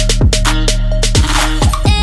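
Background music track with a heavy bass and a steady, fast beat, in an electronic hip-hop or Afrobeat style.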